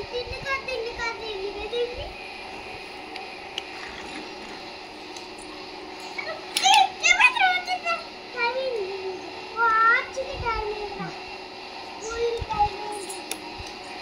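A baby babbling in short, high-pitched bursts, with a few louder squeals about halfway through and again a few seconds later.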